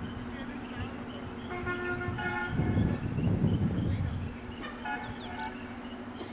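Outdoor ambience with two stretches of steady pitched tones, each with several overtones, about a second and a half in and again about five seconds in. Between them a louder low rumble runs for nearly two seconds. Faint high chirps sound throughout.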